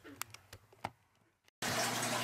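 A few faint, short clicks over near quiet in the first second. About one and a half seconds in, the sound drops out for an instant and a steady low hiss of room noise begins.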